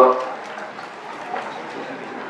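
Steady room noise of a hall's sound system during a pause in a talk, after the last of a man's word at the start.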